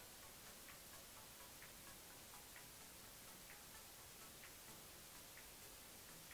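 Near silence: faint room tone with a soft, even tick roughly once a second.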